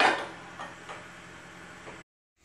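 A sharp knock with a short ringing tail, followed by a few faint clicks.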